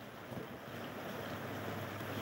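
Steady, even hiss of wind, with wind noise on the microphone.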